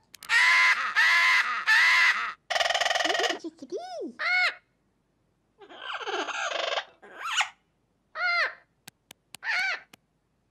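A macaw squawking: three loud, harsh calls in the first two seconds, then a buzzy call and a run of shorter, rising-and-falling squeaky calls with silent gaps between them.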